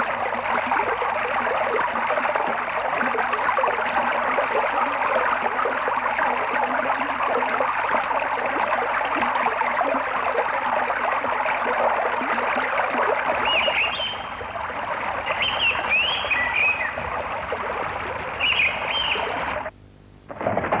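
Water rushing and splashing off a turning wooden mill water wheel, a steady even noise. Over the last few seconds a bird calls several times with short chirps, and the sound drops out briefly just before the end.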